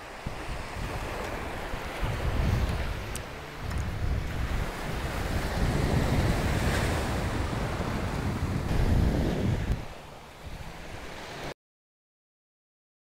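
Surf washing up on a sandy beach, with gusting wind buffeting the microphone in a heavy, uneven rumble. The sound cuts off to silence near the end.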